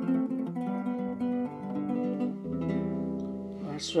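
Nylon-string classical guitar fingerpicked: a run of plucked notes ringing over one another, with a low bass note coming in about halfway. The playing thins out near the end, the last notes left to ring.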